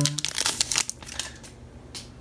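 Foil wrapper of a Pokémon trading-card booster pack being torn open and crinkled: a dense run of crackles for about the first second, then dying down.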